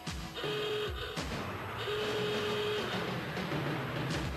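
Electronic title-card sound effects over a noisy, buzzing backing. Two held beeping tones sound, one shortly after the start and a longer one about two seconds in.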